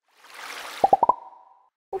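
Edited-in cartoon sound effect: a short airy whoosh, then four quick pops stepping up in pitch, the last held briefly as a tone.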